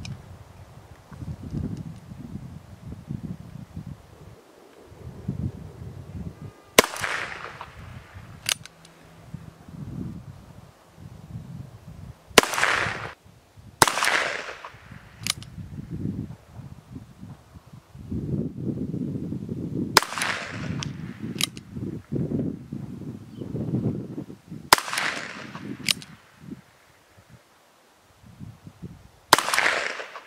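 A Ruger Wrangler .22 LR single-action revolver fires six shots of 40-grain CCI Mini Mag ammunition. Each is a sharp crack with a short ring-off, spaced irregularly a few seconds apart, the first about seven seconds in and the last near the end. Fainter sharp clicks come between some of the shots.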